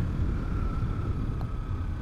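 Kawasaki Z300's parallel-twin engine running steadily as the motorcycle cruises, a low rumble mixed with wind noise on the microphone.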